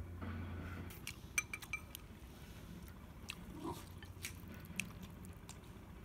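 Faint chewing and crunching of fermented sour pork with its crispy rice-meal crust. A few light clicks come from wooden chopsticks against a ceramic bowl, most in a cluster between one and two seconds in.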